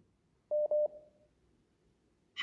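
A short electronic beep about half a second in: one steady mid-pitched tone, broken twice in quick succession, that fades away within about half a second.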